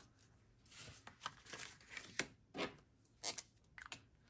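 Paper dollar bills handled and slid into a binder's cash envelope, heard as a series of short, faint paper rustles.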